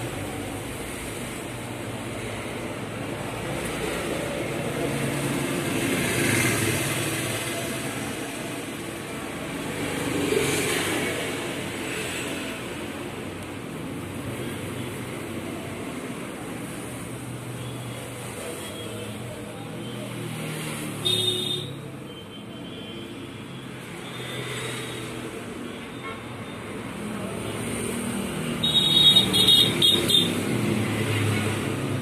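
Road traffic noise that swells now and then as vehicles pass, with brief high tones about two-thirds of the way through and again near the end.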